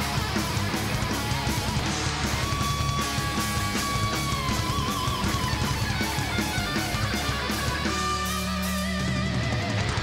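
Thrash metal band playing live: distorted electric guitars over driving drums and bass. A lead guitar holds a long high note that breaks into vibrato a few seconds in, and plays more wavering lead notes near the end.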